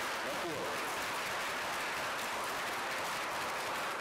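Audience applauding steadily in a conference room, with a voice heard briefly near the start.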